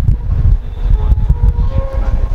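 Low rumble of handling noise on a clip-on microphone, with a few soft clicks. About halfway through, faint steady tones begin as a tablet starts to play audio.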